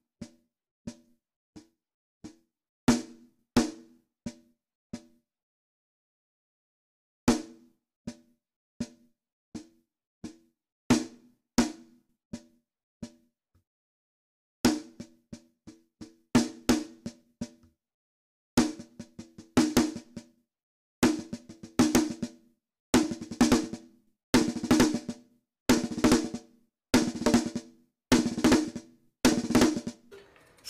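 Acoustic drum kit played with sticks on snare and toms: a fill built on six-note groupings, at first as short, slow phrases with pauses between them, then repeated faster and denser through the second half.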